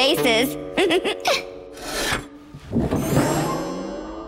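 Cartoon sound effect of a stone floor cracking: a few short knocks, then a scraping, grinding crackle through the last second or so. A character's voice is heard briefly at the start.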